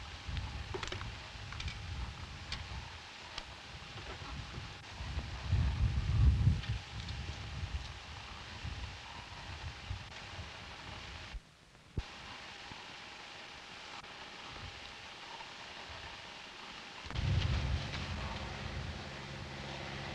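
Outdoor field recording with irregular low rumbling gusts, like wind on the microphone. It drops out briefly with a click about twelve seconds in. From about seventeen seconds a louder low steady hum with several tones sets in.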